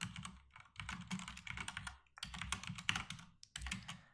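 Typing on a computer keyboard: a quick run of keystrokes, fairly quiet, with a short pause about halfway through.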